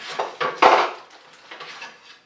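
Hard objects clattering and knocking as someone rummages for a ruler, with one loud knock about two-thirds of a second in, then a few lighter clicks.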